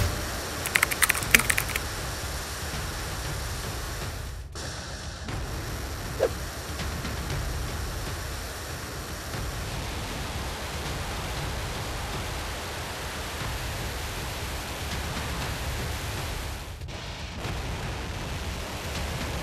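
Chollima-1 rocket engines firing at launch: a steady, deep rushing rumble, with a few sharp crackles in the first two seconds.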